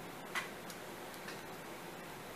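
Near quiet room tone with a few faint, short clicks from a small diecast toy car being handled, the clearest about a third of a second in.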